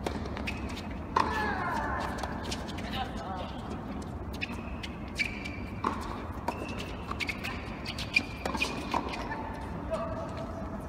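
Tennis ball struck back and forth by racquets in a doubles rally on a hard court, a string of sharp hits at irregular intervals, starting with a serve, mixed with squeaks of shoes on the court.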